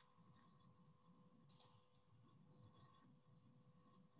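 Near silence with a single short click at a computer about a second and a half in.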